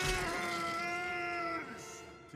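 A man's long, strained yell, held on one pitch for about a second and a half and then tailing off, from the animated Bruce Banner as he turns into the Hulk.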